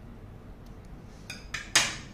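Scissors cutting through a battery's metal fuse strip: a few light clicks, then one sharp metallic snip near the end.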